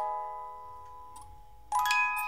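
Ballerina music box playing its tune, its plucked metal-comb notes ringing out. One note fades for over a second before a quick run of notes near the end.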